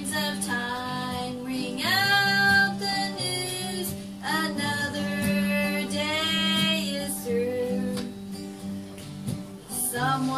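A woman singing with long held notes, accompanied by a man playing acoustic guitar.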